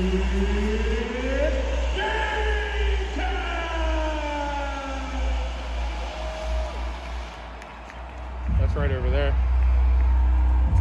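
Arena sound system playing a darkened-arena team-introduction soundtrack: long falling and sliding synth tones over a deep steady bass that gradually quiets. About eight and a half seconds in it swells louder, with a wavering, voice-like sound over the bass.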